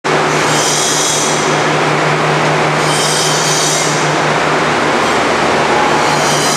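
Forrest Model 480i horizontal band saw running without cutting: a steady low motor hum with a high-pitched whine from the blade that swells about a second in and again about three seconds in.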